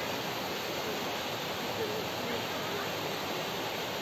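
Steady rushing of a waterfall and the shallow stream running below it.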